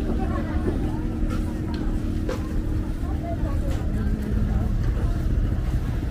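A boat engine running steadily with a low, even hum, under faint background voices and a couple of light knocks.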